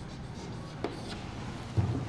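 Chalk writing on a blackboard: faint scratching with a sharp tap a little under a second in. A short, louder low sound comes near the end.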